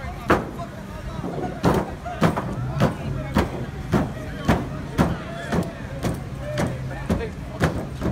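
A man jumping up and down on a police patrol car: heavy thumps on its sheet-metal hood and roof, about two a second and evenly spaced after a pause about a second in.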